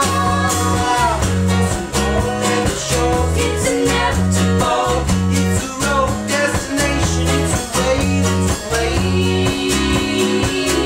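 Indie rock band playing live: strummed acoustic guitars and electric guitar over bass and drum kit keeping a steady beat, with keyboard and voices singing.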